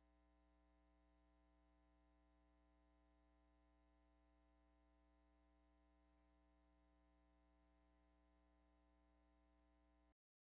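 Near silence: only a faint steady hum.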